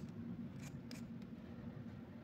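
Handheld vegetable peeler scraping strips of peel off a raw potato: two short, faint strokes close together about a second in.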